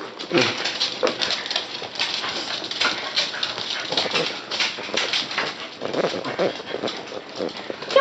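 West Highland White Terrier puppies and dogs playing on a wooden floor: a busy, irregular clatter of claws clicking and scrabbling, with a short puppy vocal sound near the start.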